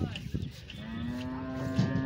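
A cow mooing: one long, steady call that starts about a second in, with a knock near its end.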